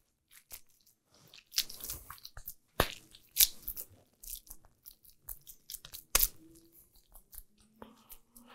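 Hands scooping and pressing a wet lump crab-meat mixture into a cake: irregular soft squelches and crackles, with a few sharper clicks.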